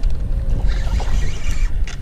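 Wind buffeting the microphone in a steady low rumble, with water washing against a small boat.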